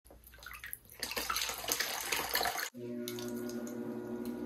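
Water splashing and dripping from a wet sponge. It stops suddenly about two-thirds of the way in, and an electric pottery wheel's motor hums steadily.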